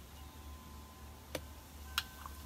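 Two light clicks, about half a second apart near the end, from a metal spoon tapping a plastic citrus juicer, over a low steady hum.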